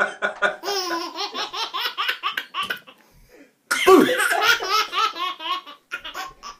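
A man laughing heartily in quick, rhythmic bursts that die away, then, after a brief pause about two-thirds of the way in, a sudden burst of a baby's belly laughter.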